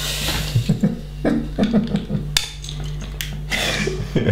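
Plastic LEGO bricks clicking and rattling as hands rummage through a loose pile of pieces on a cloth-covered table, with a few sharp clicks, over a steady low hum.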